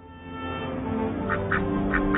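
Ducks quacking, a quick run of short calls starting a little past halfway. Under them, background music with long held notes swells in.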